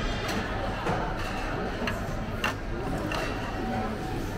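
Restaurant room noise: a steady low hum with faint voices around, and a few sharp clicks of tableware, the clearest about two and a half seconds in.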